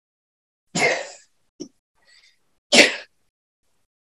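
Two short, breathy bursts of vocal noise from a person, about two seconds apart, with a faint click between them.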